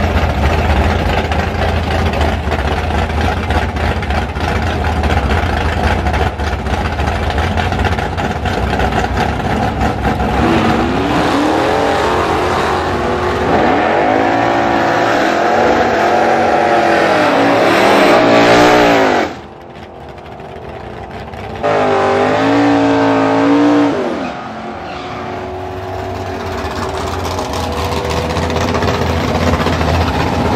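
Drag-racing engines idling, then revving in repeated rising and falling sweeps, loudest just before a sudden drop about two-thirds through. A second short burst of rising revs follows, then a lower steady engine sound.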